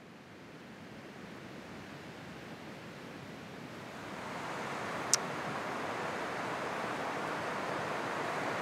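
Sea surf and wind on a shore, a steady wash of noise that fades in and swells louder, with a single brief high click about five seconds in.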